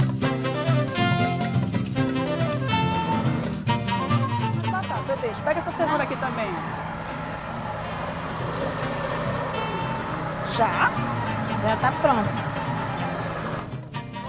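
Background music with plucked guitar, and a countertop blender running under it, puréeing a potato-and-carrot sauce.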